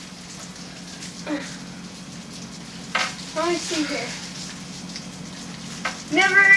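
Steady hum and hiss of a quiet room, with a short bit of a person's voice about three seconds in, just after a click, and a fainter one about a second in.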